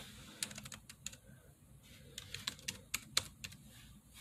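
Typing: a string of quick, irregular taps and clicks, in two bursts, one early and one in the second half.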